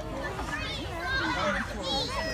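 Several children's and adults' voices talking and calling out at once, high-pitched and overlapping, with a steady low noise underneath.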